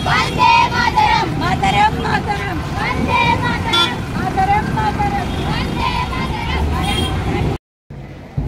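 Many children's voices shouting together over a low street rumble. The sound cuts off suddenly near the end.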